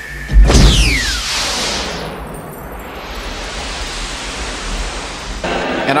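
Production sound effect for a title card: a sudden loud whoosh with a falling tone, then a rushing hiss that thins and swells again before cutting off, over a low hum.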